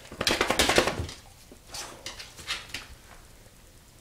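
A dog moving about close up on a tile floor, making a clattering, rattling burst that lasts about a second, then a few short, softer sounds.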